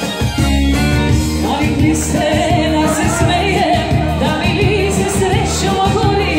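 Live band music with a steady beat and bass line; a voice starts singing over it about a second and a half in.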